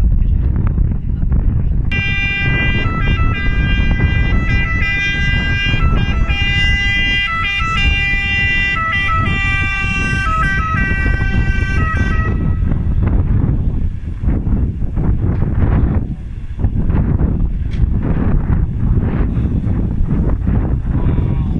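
Fire engine two-tone siren, alternating between two pitches, starting about two seconds in and cutting off about ten seconds later. Heavy wind rumble on the microphone runs underneath.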